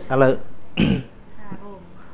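A man talking into a microphone, broken about a second in by one short throat clearing.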